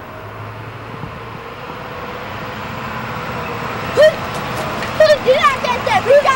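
Steady street traffic noise, then from about four seconds in a run of short, sharp, high-pitched shouts from voices, each cry rising and falling in pitch; the shouts are the loudest part.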